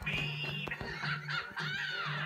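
Cartoon song music playing from a television, with a steady pulsing bass line. Over it a cartoon character's voice calls out, sliding up and down in pitch near the end.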